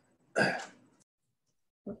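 Speech only: a short vocal sound about half a second in, a pause of near silence, then a voice starting to say 'okay?' at the very end.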